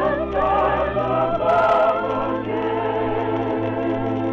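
Soprano voice singing with a wide vibrato over musical accompaniment, moving into held notes about a second in. The sound is an old, narrow-band recording of a 1943 radio broadcast.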